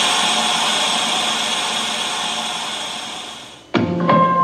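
A steady static hiss, like white noise, that slowly fades away and cuts out about three and a half seconds in. Piano notes begin right after, near the end.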